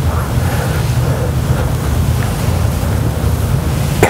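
Loud, steady low rumbling noise on the microphone, like wind or rubbing on a clip-on mic rather than any sound in the room. It cuts off abruptly at the end.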